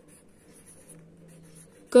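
Pencil writing on lined notebook paper: faint, intermittent scratching of the letter strokes.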